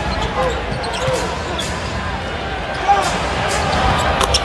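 Basketball being dribbled on a hardwood court, a run of sharp irregular bounces over steady arena crowd noise.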